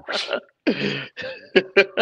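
Men laughing: a breathy burst of laughter, a short voiced laugh, then quick chuckles.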